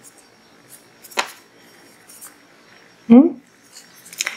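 Small scissors handled just after trimming a crochet thread end, giving one sharp click about a second in, with a few faint ticks around it.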